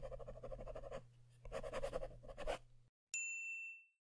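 Pen-scratching-on-paper sound effect in two quick scribbling stretches over a low hum, then a single bright ding about three seconds in that rings for under a second.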